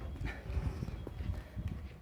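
Footsteps on concrete and handling knocks on a handheld phone as it is carried along a parked truck: irregular low thumps, several a second.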